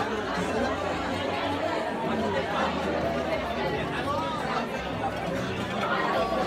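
Chatter of many people talking at once around dinner tables: overlapping conversation with no single clear voice, at a steady level.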